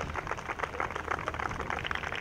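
Golf spectators applauding a shot: many hands clapping in a steady, fairly soft patter.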